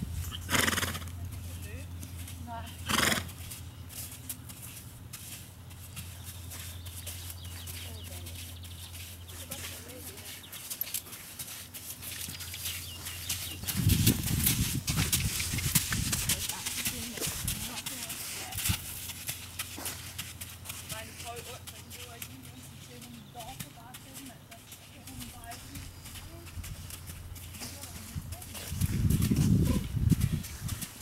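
A horse walking on a sandy arena, hoofbeats soft on the sand. Two short sharp sounds stand out in the first few seconds, and the sound is loudest around the middle.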